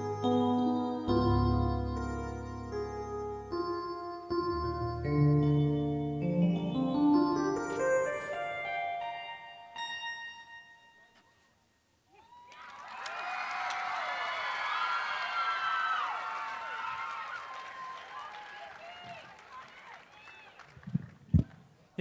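A jazz phrase played on a Casio electronic keyboard in a piano voice: chords, then a rising run of notes that ends and dies away about ten seconds in. An audience then claps and cheers for several seconds, fading out, and a couple of thumps come near the end.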